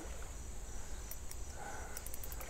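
Quiet outdoor ambience with a faint steady insect drone, crickets or similar, and a few soft ticks about halfway through.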